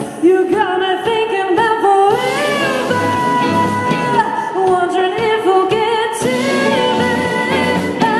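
Indie synth-pop band playing live: a woman singing lead over electric guitars, bass and drums.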